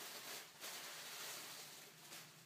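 Loose white packing wrap rustling and crinkling as hands pull it off a small parcel, with a brief pause about half a second in.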